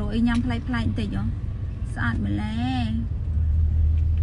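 A woman talking, in two short stretches, over the steady low rumble of a moving car's cabin.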